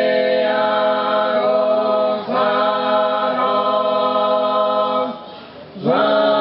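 Four male voices singing a cappella in Sardinian polyphony, a cuncordu holding long, close chords. There is a short break about two seconds in, then a pause for breath near the end before the next chord begins.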